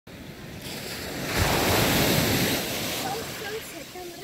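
A rushing noise, spread across low and high pitches, that builds to a peak about a second and a half in and then dies away.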